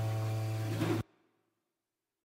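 Acoustic guitar outro music, a strummed chord ringing out and then cut off abruptly about a second in.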